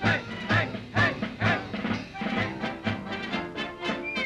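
Orchestral score from an early-1930s cartoon soundtrack, playing with a steady beat of about two accents a second, louder in the first half and softer after about two seconds.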